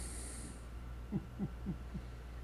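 A person's low chuckle: four short falling 'huh' sounds, about a quarter second apart, in the second half.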